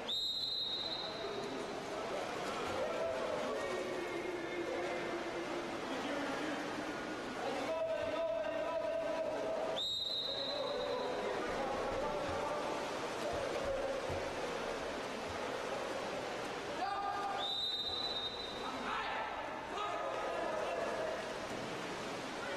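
Referee's whistle sounding three short blasts: one at the start, one about ten seconds in and one about seven seconds later. Between them, voices call out and water splashes, echoing in an indoor pool hall.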